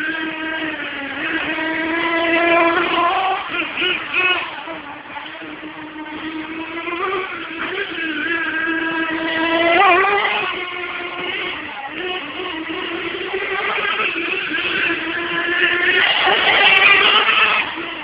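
1/8-scale RC late-model race cars running laps, their motors' whine rising and falling in pitch as they throttle on and off through the turns. It is loudest as a car passes close about ten seconds in and again near the end.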